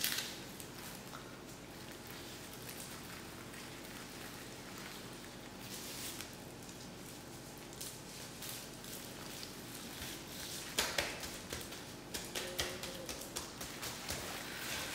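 Gloved hands handling and salting a raw whole chicken on a plastic sheet: faint rustling over a low steady hum, then a run of crackling clicks near the end.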